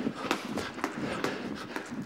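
Jump ropes slapping the floor and feet landing as two jumpers skip in wheel, a quick uneven run of sharp clicks, several a second.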